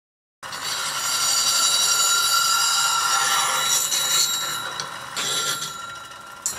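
A hollowing-tool radius cutter, clamped in a sharpening fixture, is pressed against a running bench grinder wheel, grinding its bevel to raise a burr on the cutting edge. The shrill, ringing grinding starts abruptly about half a second in and eases off toward the end.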